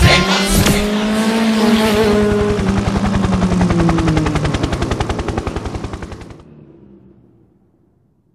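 The end of an electronic dance track: a held synth tone under a rapid stutter of many pulses a second, which cuts off about six and a half seconds in and trails away into silence.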